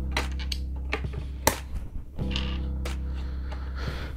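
Background music with held low chords, over sharp plastic clicks and taps of LEGO bricks being picked up and pressed together, the loudest click about one and a half seconds in.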